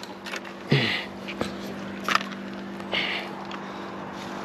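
A steady low motor hum, with brief rustles and a few light clicks as a small fish is handled and laid on a plastic measuring board.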